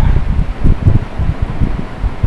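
Low rumbling buffeting on the microphone, in several uneven pulses.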